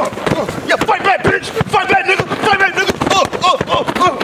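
Padded boxing-glove punches landing as repeated dull thumps, many in quick succession, under laughter and other voices.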